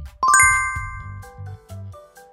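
A bright bell-like chime sound effect rings out about a quarter second in, its several tones fading over about a second, over background music with a steady beat.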